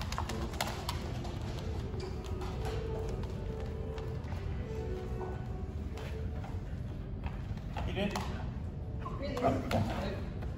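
A dog's claws clicking and tapping on a hard floor as it moves about, over faint background music.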